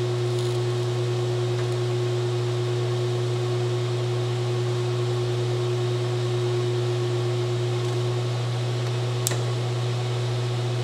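Steady hum from a running 10 kW induction heating power supply, with a constant higher tone over it and no change in level while the coil heats the steel hub. A single sharp click about nine seconds in.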